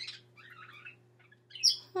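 A pause in a high-pitched character voice: a short hiss at the start, then faint breathy mouth sounds over a steady low electrical hum, and near the end a falling 'hmm' begins.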